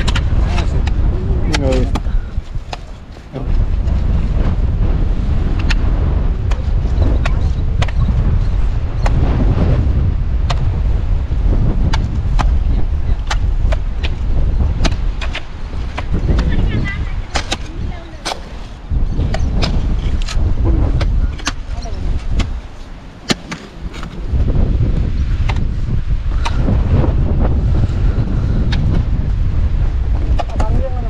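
Wind buffeting the microphone in gusts, with repeated sharp knocks of hoe blades chopping into hard, salt-crusted soil.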